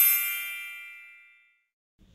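A bright, bell-like chime sound effect ringing out and fading away over about a second, leaving near silence.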